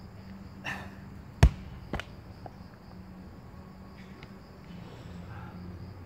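A 50 lb dumbbell dropped onto rubber floor tiles: one heavy thud about one and a half seconds in, then a smaller bounce half a second later.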